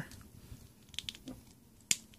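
Plastic action-figure parts being handled: a few faint small clicks, then one sharp click near the end as a helmet piece snaps into place.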